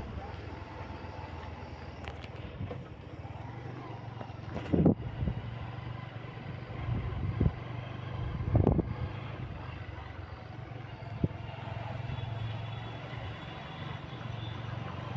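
A vehicle engine running steadily at low revs, with a few louder low thumps, the biggest about five and about nine seconds in.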